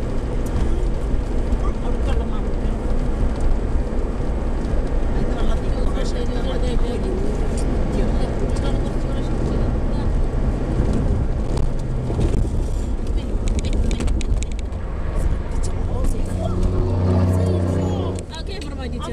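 Steady road and engine noise inside a car's cabin moving at highway speed, with a deeper low hum near the end.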